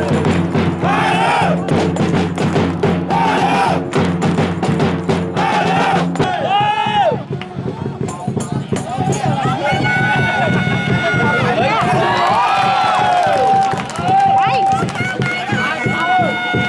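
Supporters' drumming and chanting at a football match. A steady drone with a fast regular beat runs for about the first six seconds, then gives way to sung phrases with some long held notes.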